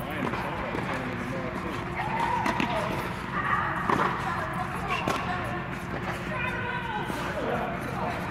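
Tennis balls struck by rackets and bouncing on an indoor hard court, a few sharp knocks spread over the seconds, under distant chatter of players and a steady hum.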